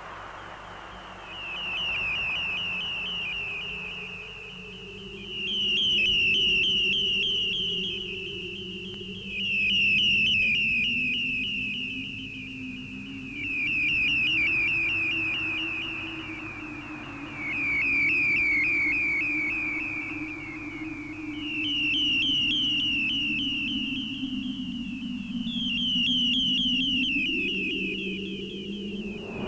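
Abstract early-1970s electronic music: a high warbling tone made of quick rising chirps, swelling and fading about every four seconds over a low drone that slowly glides in pitch.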